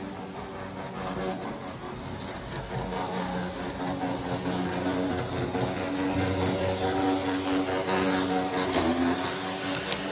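Waterman standard gauge Burlington Zephyr model train running on three-rail track: a steady electric motor hum with the rumble of wheels on the rails, getting louder as the train passes close by in the second half.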